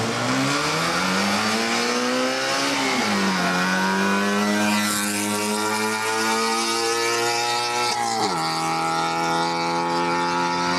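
Small hatchback race car's engine accelerating hard from a standing start, pitch climbing through the gears: a sharp drop at an upshift about three seconds in, a slower climb, then a second upshift just after eight seconds.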